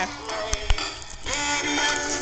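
Dancing Santa toy playing its song: an electronic tune of held pitched notes, with two short clicks a little after half a second in.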